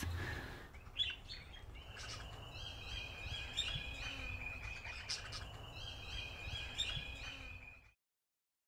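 Outdoor ambience of birds chirping, with repeated short calls over a steady high note, fading out near the end.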